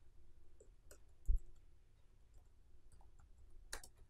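Computer keyboard keys clicking as text is typed, a few scattered keystrokes, with a dull low thump a little over a second in and a sharper click near the end.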